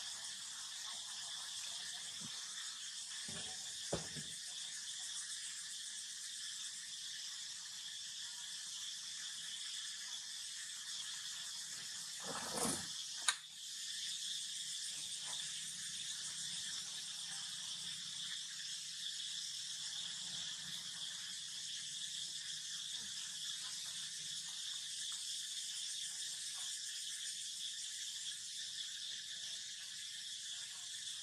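Steady high-pitched chorus of insects. A couple of faint knocks come about four seconds in, and a brief louder noise ending in a sharp click comes about twelve to thirteen seconds in.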